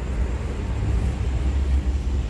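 Steady low rumble of heavy vehicle engines, the sound of idling or passing trucks at a roadside.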